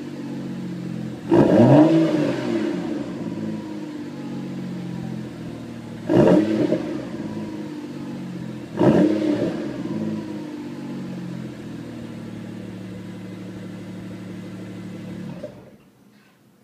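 BMW 135i's turbocharged inline-six through a REMUS quad-tip aftermarket exhaust, idling, then blipped three times. Each rev rises and falls in about a second and is the loudest thing heard. The engine settles back to idle and is switched off near the end, where the sound stops suddenly.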